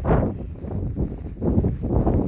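Blizzard wind buffeting the phone's microphone: a low, uneven rumble that eases off in the middle and swells again near the end.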